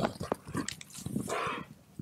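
Several horses galloping past on dry dirt, their hooves striking in quick irregular knocks, with an animal's breathy snort about a second and a half in.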